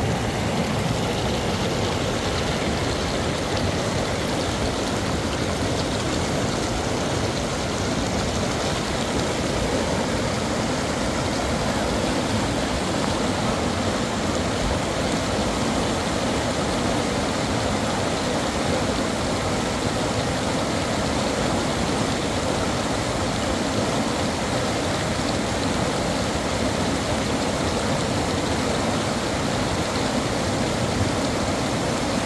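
Fast mountain river rushing over rocks and rapids: a loud, steady wash of white water.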